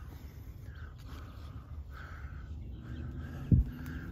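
A bird calling faintly in the distance, a short call repeated about five times, over a low rumble of handling and wind on the microphone. One sharp thump about three and a half seconds in.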